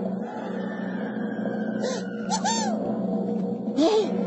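Cartoon soundtrack: a steady low held sound, with short squeaky chirps that rise and fall in the middle and a quick rising squeak at the end.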